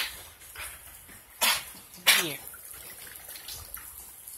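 Two huskies play-wrestling, with a short sharp noisy burst from the dogs about a second and a half in, over the steady patter and drip of rain.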